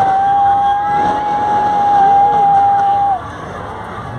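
A loud, steady single-pitched tone, held for about three seconds and then cut off sharply, over the noise of a crowd.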